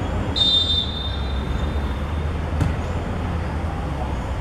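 A referee's whistle gives a short, shrill blast about half a second in to signal a free kick, then fades. About two and a half seconds in there is a dull knock as the ball is struck. A steady low rumble of wind on the microphone runs underneath.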